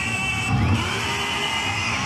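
Loud recorded dramatic soundtrack played over the stage act: sustained high tones with a pitch glide about half a second in and a low throbbing pulse beneath.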